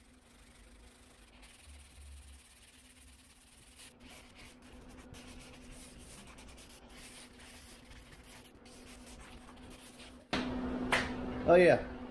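Sanding block wrapped in 120-grit paper rubbed back and forth by hand over body filler on a car panel, feathering the filler edges, heard as faint repeated scraping strokes. In the last two seconds it gives way to a louder steady low hum and a man saying 'yeah'.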